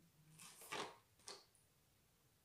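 Near silence: room tone, with a soft rushing noise about half a second in and a short click a little after one second.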